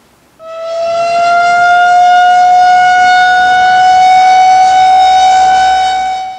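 Outdoor tornado warning siren sounding one long steady tone that starts about half a second in and climbs slowly and slightly in pitch; the siren system is sounded only for tornado warnings.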